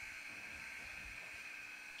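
Ice rink's end-of-period horn sounding one steady, faint high tone for about two seconds, signalling the end of the period.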